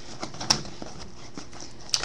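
Light clicks and taps of small cardboard trading-card boxes being handled and shifted in the hands, with a sharper click about half a second in.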